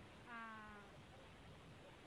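A single faint drawn-out call, falling slightly in pitch, lasts about half a second from about a quarter second in, over quiet background.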